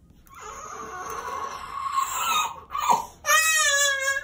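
A one-year-old crying hard from the pain of a vaccination shot in the thigh. A strained, breathy cry builds for about two seconds, then comes a quick gasp and a loud, high wail from about three seconds in.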